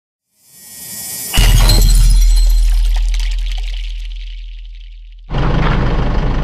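Intro sound effect: a hissing swell that breaks about a second and a half in into a loud deep boom with a shattering, glittery top, the bass dying away slowly over about four seconds. Near the end it cuts abruptly to a steady low engine hum.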